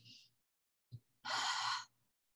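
A woman breathing out audibly while holding a squatting yoga chair pose: one breathy sigh lasting about half a second, a little past the middle.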